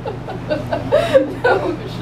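People chuckling and laughing in short bursts.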